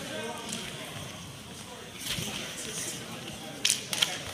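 Low murmur of spectators' voices in a school gym, with a single sharp smack near the end.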